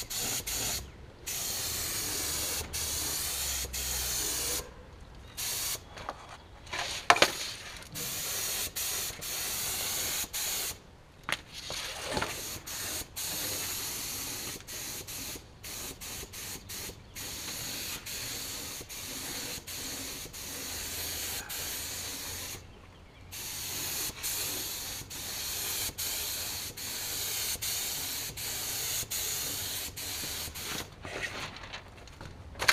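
HVLP paint spray gun hissing in repeated passes, with short breaks where the trigger is let off between passes, as a second coat goes on. There is a sharp knock about seven seconds in.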